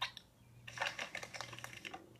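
Cartoon sound effect of a plastic toy dough extruder being worked: one click, then a quick run of rattling clicks as the dough is pushed out. Heard through a TV speaker over a steady low hum.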